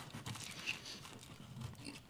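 Faint rustling and small scattered clicks of hands working an exhaust hose onto the rear flange of a desktop CO2 laser engraver.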